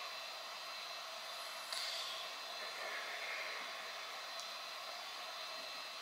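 Steady, low background hiss of room tone, with a brief soft noise about two seconds in.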